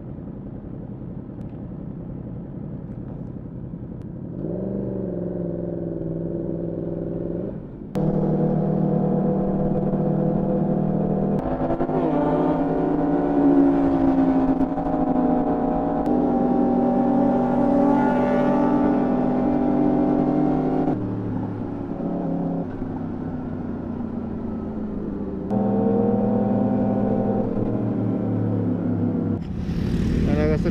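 Sport motorcycle engine heard from on board while riding, held at steady revs in long stretches, with its pitch changing abruptly several times.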